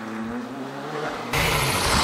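Rally car engine revving at a distance, its pitch rising and falling through the gears. About a second and a half in, the sound cuts abruptly to a much louder, close-up rally car engine at full throttle with tyre noise from the road.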